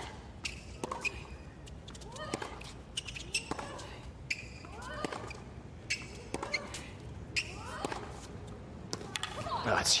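Tennis rally: racket strikes on the ball about once a second, with a player's short grunt rising and falling in pitch on many of the shots.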